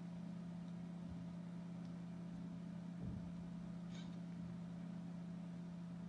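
Steady low background hum, with a faint click about three seconds in and a small tick about a second later.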